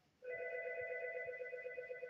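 Algo 8180 SIP audio alerter's 'warble2-med' ring tone, played as a test at its lowest ring volume setting: an electronic tone warbling rapidly, starting a quarter second in and lasting about two seconds.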